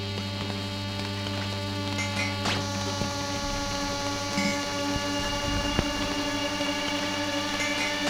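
Live electronic improvised music: a low droning hum under a stack of steady sustained tones, with scattered clicks. About three seconds in, the low hum drops away into a rougher, crackling low rumble as a new tone enters.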